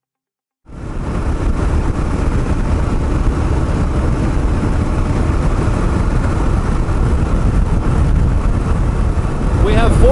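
Steady wind rush and road noise on the microphone of a Kawasaki KLR 650 single-cylinder dual-sport motorcycle riding at highway speed, with the engine drone underneath. It cuts in suddenly about half a second in, after a moment of silence.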